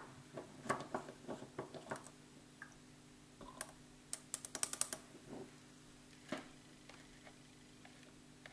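Light clicks and taps of an ink bottle and its dropper cap being handled on a table, with a quick run of sharp clicks about halfway through and a single louder tap a little later.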